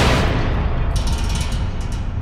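Intro sound effect for a channel logo: a sudden loud boom that rolls on as a deep rumble, with brief glittering high sweeps about a second in.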